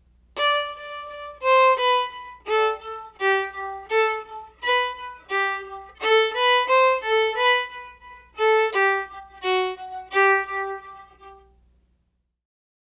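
Solo violin played with strum bowing: a slow, rhythmic phrase of short, separately bowed notes with accented attacks, played at a slowed-down demonstration tempo. The last note fades out shortly before the end.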